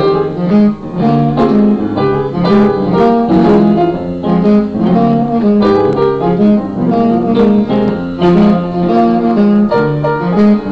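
Live jazz piano playing, with quick runs of notes over chords.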